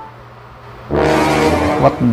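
A loud, low, flat horn-like tone lasting about a second, starting about a second in: a comedy sound effect marking the failed result.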